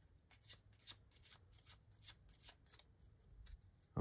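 Faint tarot cards being shuffled: soft, irregular little clicks and flicks of cardstock, about three a second.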